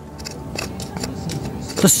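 Metal hand trowel scraping through loose, crumbly soil in a quick run of short scratches.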